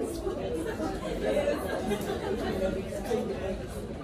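Background chatter: many women talking at once in a room, overlapping voices with no single clear speaker.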